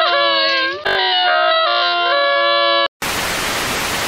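Long, drawn-out crying wails, held and sliding slightly in pitch, which cut off sharply about three seconds in. After a moment's silence comes a second of steady static hiss from a VHS-style video transition.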